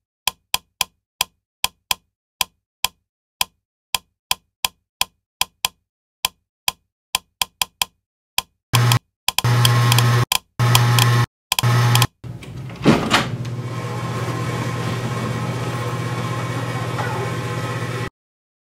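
Wall light switches flicked on and off, making a long run of sharp clicks in an uneven rhythm of about three a second: a signalling pattern. About nine seconds in, an electrical buzz cuts in and out. After a sharp bang about thirteen seconds in, it settles into a steady hum with hiss.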